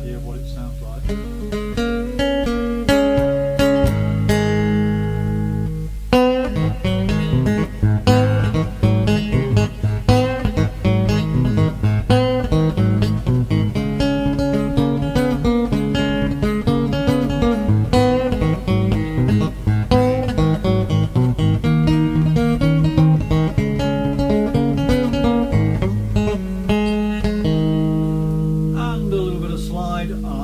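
Three-string tin-bodied electric guitar being played: held notes ring for the first few seconds, then a run of quick picked notes and riffs from about six seconds in, settling back into ringing held notes near the end.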